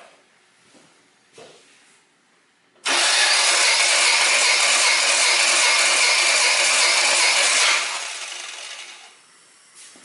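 Hot Toyota 4A-FE 16-valve four-cylinder engine being cranked by its starter motor for about five seconds without starting, so the compression gauge in one spark-plug hole can take its reading. The sound starts suddenly a few seconds in and fades away after the starter is released.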